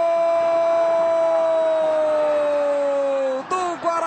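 A football narrator's long drawn-out goal shout, 'goooool', held on one high note, sagging slightly in pitch and breaking off about three and a half seconds in.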